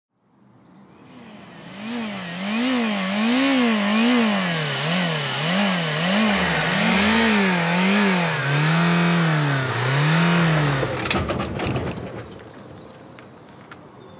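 Car engine revved hard up and down over and over, its pitch climbing and falling about one and a half times a second, then stuttering with a few sharp knocks and cutting out about eleven seconds in.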